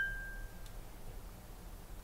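A small bell, struck just before, ringing out with a clear tone that fades away within about half a second, then faint room tone. It is the cue for the student to pause and give an answer.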